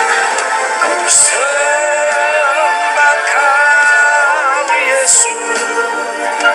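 A man singing a worship song into a microphone over instrumental backing, holding long notes that waver in pitch.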